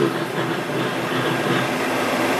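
Steady rumble of heavy railroad box cars rolling along the track as the Suburban's 454 V8 tows them, heard as a hissy old film soundtrack.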